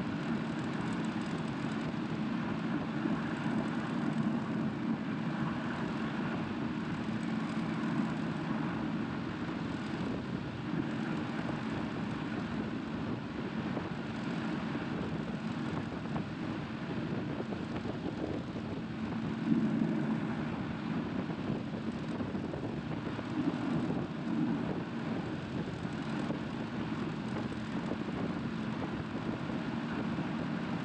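Caterpillar 535 skidder's diesel engine running steadily while the machine travels along a gravel road, with a brief louder moment about twenty seconds in.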